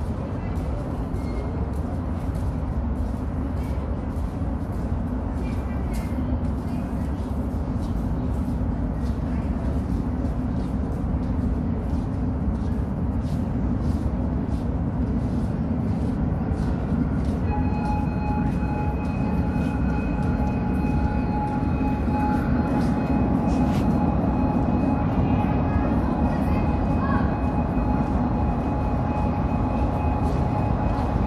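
Underground metro platform: a steady low rumble with faint voices of waiting passengers. About halfway through, a steady high whine sets in and the rumble slowly grows as a Cairo Metro train approaches through the tunnel.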